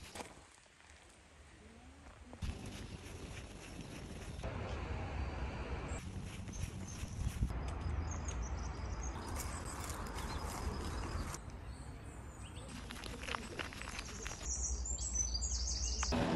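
Outdoor ambience from a string of short shots cut together: low wind rumble on the microphone with faint rustling and small clicks, changing abruptly at each cut.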